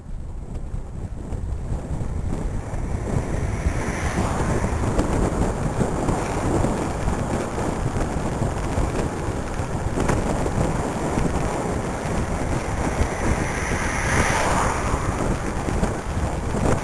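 Wind rushing over the microphone of a camera mounted on a moving road bicycle, a steady noisy roar that builds up over the first couple of seconds.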